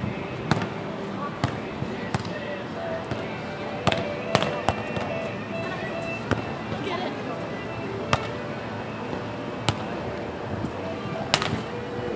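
Sand volleyball rally: sharp smacks of hands and forearms striking the ball every second or two, some louder than others, the loudest about four and eleven seconds in. Under them runs a steady murmur of voices.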